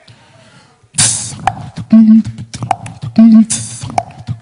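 Human beatboxing into a handheld microphone: after a quiet first second, a groove starts with sharp clicks, loud hissing cymbal-like bursts and a low hummed bass note that comes back about every second and a quarter.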